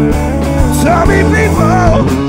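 A blues band playing live, with electric guitar, bass and drums. The lead line has notes that bend up and down about halfway through.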